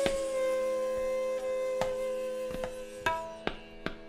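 Bansuri (bamboo flute) holding one long note in a slow vilambit gat in Raag Malkauns; the note sinks slightly and fades over about three seconds above a steady drone. Sparse tabla strokes come in from about two seconds in.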